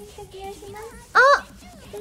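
Speech only: a young woman's single short exclamation, an arching 'oh', about a second in, over faint background chatter.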